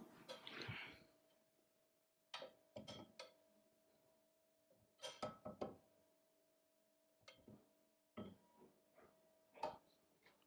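Near silence broken by a few faint, short metallic clicks and ticks of the stainless wire fitting and soft jaw pliers being handled at the post.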